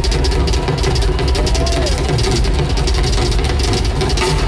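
Drum kit solo played live through a concert PA: dense, rapid strikes over a steady low bass-drum rumble.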